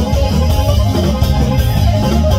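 Live regional Mexican band playing an instrumental passage between sung lines: a sousaphone bass line and drums, with guitar.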